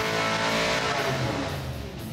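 A 400-horsepower V8 street engine running at high revs on an engine dynamometer during a power run, a steady note that dies away in the second half as the run ends.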